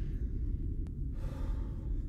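A man breathing out audibly into the microphone, a breathy exhale starting about a second in, over a steady low hum. A faint click comes just before the breath.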